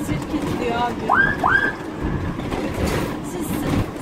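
Two short siren whoops about a second in, each sweeping quickly up in pitch and holding briefly, over the steady rumble of the vehicle on the road.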